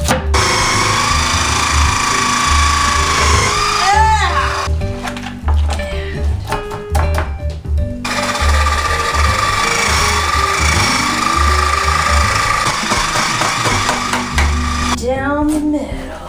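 Background music with a steady bass beat, over the whirring of an electric juicer motor. The motor runs for the first few seconds, stops, then runs again for about six seconds in the middle.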